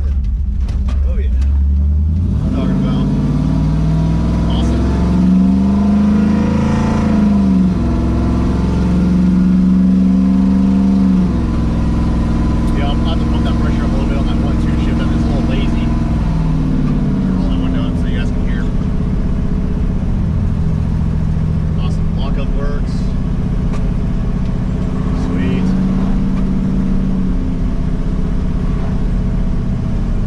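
Cammed 5.3-litre LS V8 with a BTR Stage 4 truck cam, heard from inside the cab while accelerating and driving. The engine note climbs for several seconds, then drops in two steps as the 4L80E automatic upshifts, and settles into a steady cruise that rises and eases a few times.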